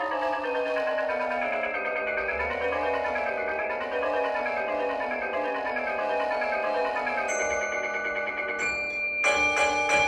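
Mallet keyboard percussion playing fast runs that rise and fall in pitch, then a sudden loud chord that keeps ringing, bell-like, near the end.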